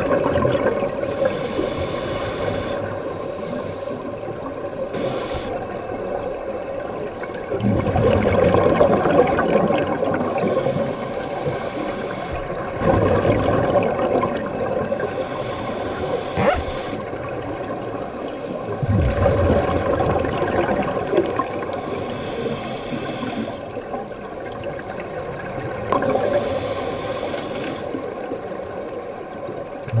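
Scuba regulator exhaust bubbles heard underwater: a surge of bubbling about every six seconds as a diver breathes out, over steady underwater noise.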